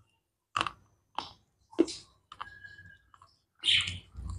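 Close-miked mouth crunching a white-chocolate KitKat wafer: three crisp crunches about half a second apart, then softer crackles and a louder crunch near the end.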